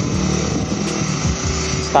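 Komatsu hydraulic excavator's diesel engine running steadily under load as the machine digs and lifts soil, a constant low drone.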